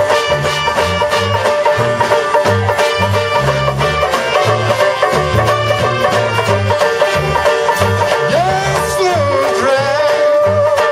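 A brass band playing an instrumental chorus live: trumpets, saxophone and trombone over a pulsing tuba bass line, with banjo and a steady beat. Near the end a horn bends its notes up and down.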